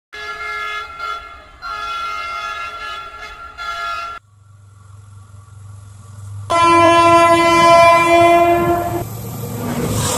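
Locomotive horn sounding a chord in several short blasts, then cut off abruptly. A low train rumble builds, and a second, louder horn blast is held for about two and a half seconds before giving way to the noisy rumble of the train passing close by.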